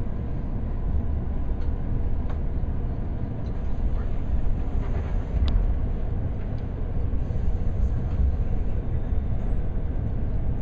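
Steady low rumble of a Korail passenger train carriage heard from inside as the train runs, with a few faint clicks and knocks.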